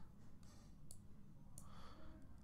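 A few faint computer mouse clicks over near-silent room tone.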